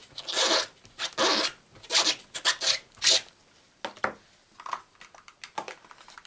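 Brisk rubbing strokes of a hand wiping across the paper-covered work surface: five or six quick strokes in the first three seconds, then a few light scrapes and clicks.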